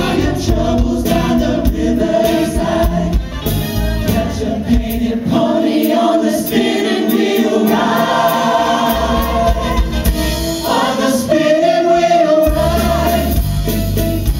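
Show choir singing an upbeat song in harmony with band accompaniment. The bass and drums fall away for much of the middle, leaving mostly the voices, and come back in near the end.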